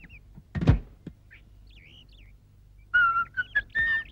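A single dull thunk about a second in and a few faint chirps, then from about three seconds in a person whistling a tune in short, clear notes.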